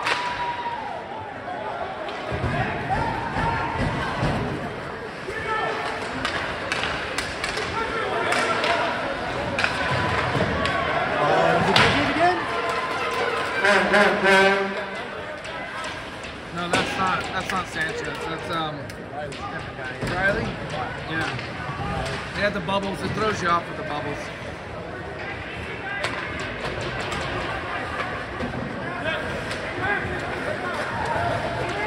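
Ice hockey game in an indoor rink: indistinct voices of players and spectators, loudest about halfway through, with repeated knocks of sticks and puck against the boards and ice.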